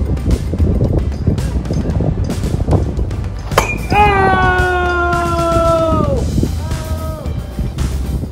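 A bat cracks against a softball about three and a half seconds in, followed by a long celebratory yell held for about two seconds, then a shorter one. Background music plays underneath.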